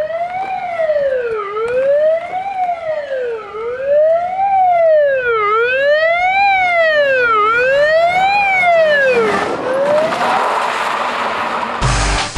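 Police car siren on a wail, its pitch rising and falling smoothly and evenly, one full sweep about every two seconds. The siren stops about ten seconds in, giving way to a loud rushing noise.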